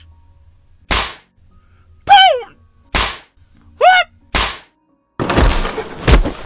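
Cartoon fight sound effects: three sharp punch hits alternating with two short high-pitched yells, the first falling and the second rising in pitch. Near the end a longer, noisy crash sets in.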